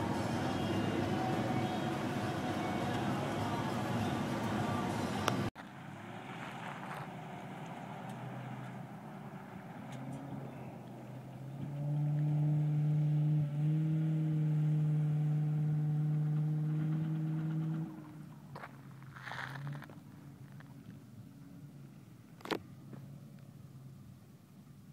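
A truck driving on sand. For the first five seconds it is heard from inside the cab: loud, steady road and engine noise. After a sudden change it is heard from a distance, its engine working at steady revs for about six seconds as it climbs a sand slope, then dropping to a faint run.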